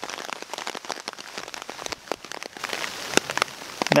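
Rain falling, heard as a steady hiss with many irregular raindrop ticks close by, growing denser in the second half.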